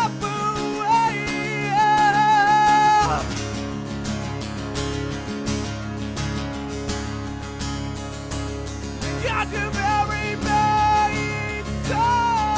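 Live acoustic band performance: a male lead vocalist sings over strummed acoustic guitar. The voice stops about three seconds in, leaving the guitars playing on their own, and comes back in about nine seconds in.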